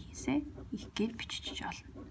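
Soft speech: a woman talking quietly, close to a whisper.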